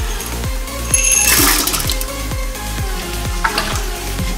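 Electronic dance music with a steady beat. About a second in there is a brief splash and fizz as a glassful of Mentos is tipped into cola in a ceramic toilet bowl.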